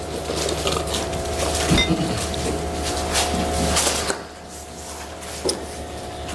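Rustling and light handling knocks of Bible pages being turned to find a passage, over a steady hum. The rustling dies down about four seconds in.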